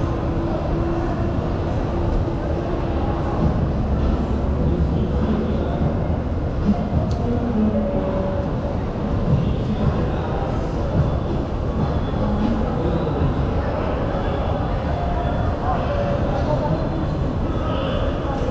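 Underground metro station ambience: a steady low rumble and hum, with people's voices in the background.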